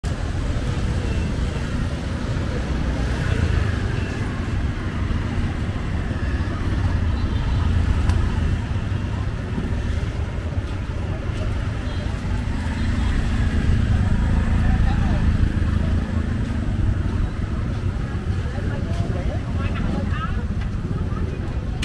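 Street traffic ambience: motorbike and auto-rickshaw tuk-tuk engines running as a steady low rumble, with people talking.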